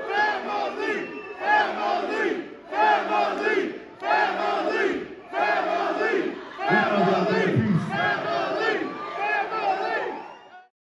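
Concert crowd chanting in unison: a short shout from many voices together, repeated about eight times at roughly one a second.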